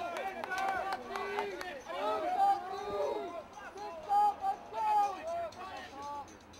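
Several people shouting and calling out over one another during a lacrosse game, with no single clear speaker. A few sharp clicks come about half a second to a second in.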